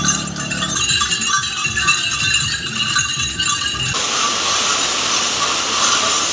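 Many small bells hanging from a pilgrim's kanwar pole jingling as it is carried along. About four seconds in, this gives way to the steady hiss of heavy rain.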